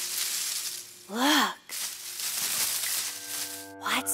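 Rustling, hissing noise, broken about a second in by one short exclaimed vocal sound that rises and falls in pitch.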